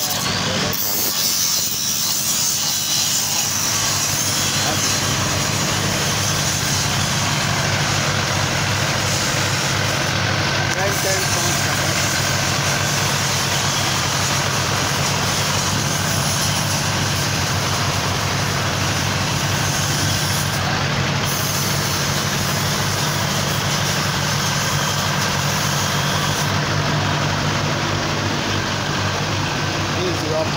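Steady running of heavy machinery, a constant low hum with mechanical noise over it and no change in pace.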